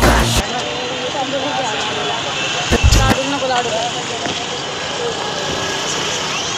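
Street ambience by a roadside market: steady traffic noise with distant voices talking, and a brief low thump about three seconds in. Background music cuts off just after the start.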